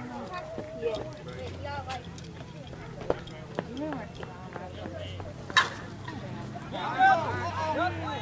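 Slowpitch softball bat striking the ball once: a single sharp crack about two-thirds of the way in, with players' voices around it and shouting just after the hit.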